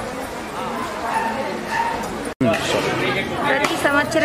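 Chatter of many voices, cut off abruptly a little over two seconds in, then a single voice speaking close up.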